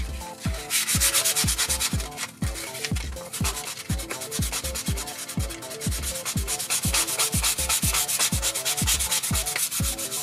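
Balsa wood being hand-sanded with a sanding block, a steady rasping, under electronic background music with a kick drum beating about twice a second.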